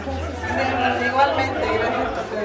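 Several people talking at once: indistinct chatter of a small crowd in a room.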